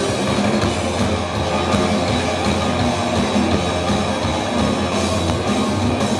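Rock band playing live: electric guitars through amplifiers, bass and drum kit in a loud, continuous full-band passage, heard from the audience.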